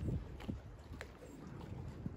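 Low wind rumble on the microphone by the water, with a few faint ticks about half a second and a second in.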